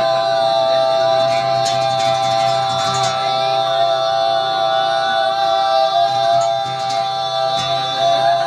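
Live music: men singing into microphones through a PA, with guitar, and a steady high tone held underneath throughout.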